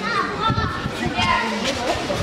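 Children chattering and calling out as they play, several high young voices overlapping.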